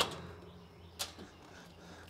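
A cordless drill-driver backing out a panel screw stops right at the start, leaving a faint low steady hum, then one sharp click about a second in.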